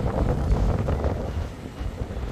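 Wind buffeting the microphone over the steady noise of street traffic.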